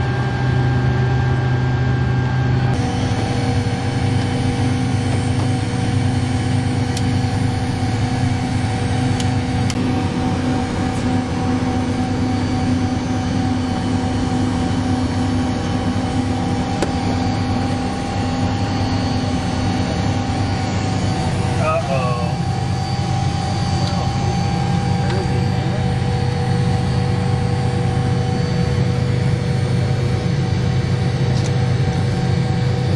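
Steady hum of a large jet aircraft's onboard systems running, heard inside the cabin and cockpit, with several constant tones under it. The mix of tones shifts a few seconds in, and a short wavering tone sounds about two-thirds of the way through.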